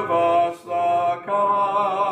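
Unaccompanied hymn singing led by a man's voice close on a microphone: long held notes with brief breaks between phrases.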